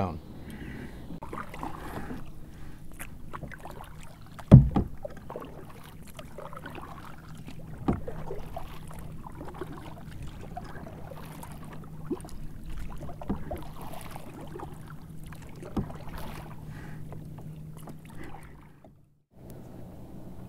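Kayak paddling on open water: the paddle strikes every few seconds over a steady low hum, with one sharp knock about four and a half seconds in that is the loudest sound. The sound drops out briefly near the end.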